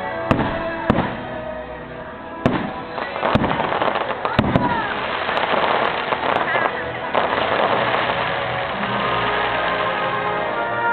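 Aerial fireworks shells bursting: about five sharp bangs in the first four and a half seconds, followed by dense crackling. The show's music soundtrack plays underneath.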